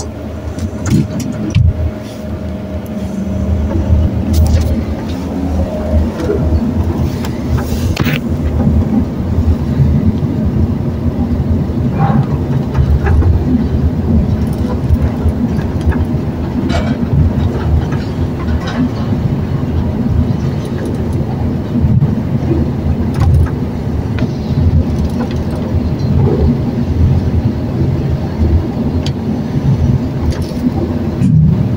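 Elevator car travelling down its shaft: a loud, steady low rumble from the moving car, with a few faint clicks and knocks along the way.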